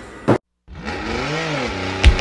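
An edited transition: a moment of dead silence, then a whoosh-like sound effect with a tone that rises and falls, resembling a revving engine, leading into music.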